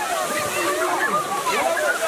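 A jet of water gushing up from a street outlet and splashing down onto wet pavement, under a crowd's overlapping excited chatter and shouts.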